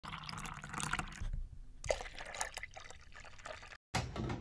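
Liquid pouring and dripping, with irregular splashes. It pauses for about half a second early on and is cut off just before the end.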